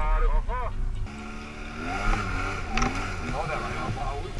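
About a second of voices, then an ATV engine running, its pitch rising and falling as the quad is ridden.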